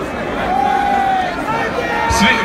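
Concert crowd noise with one amplified male voice holding a single long note, drawn out over about a second, near the middle.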